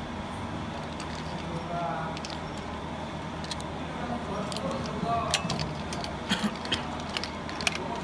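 Plastic ink dampers and brass-fitted ink tubes being handled, giving scattered small clicks and rattles that come more often in the second half, over a steady background hum.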